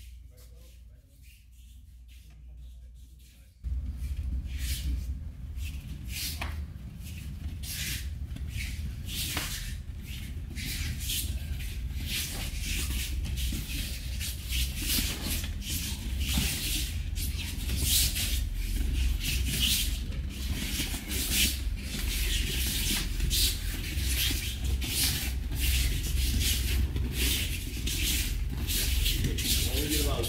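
Many bare feet shuffling, scuffing and slapping on foam judo mats, with gi cloth rustling, as a group drills stepping footwork. It comes in suddenly about four seconds in as a steady busy scuffing over a low rumble.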